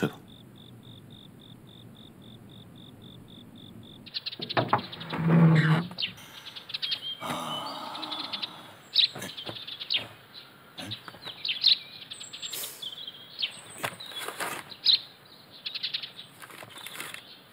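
A cricket chirping steadily at about four chirps a second. Then, about four seconds in, birds chirping and tweeting, with a louder noise about five seconds in.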